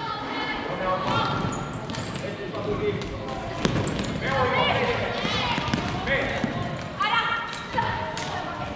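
Floorball game in a sports hall: young players calling out to each other over knocks of sticks and ball on the court, with one sharp knock about three and a half seconds in.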